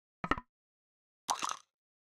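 Two one-shot lo-fi percussion samples auditioned one after the other: a short, dry knock, then about a second later a brighter, hissier percussion hit.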